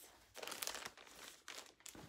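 Crinkling and rustling as an item is picked up and handled, in two bursts, about half a second in and again near the end.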